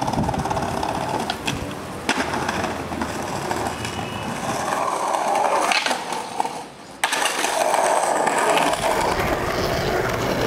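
Skateboard wheels rolling on pavement and concrete, with the sharp clack of the board on tricks a few times. The loudest clack comes about seven seconds in, just after a brief quieter moment.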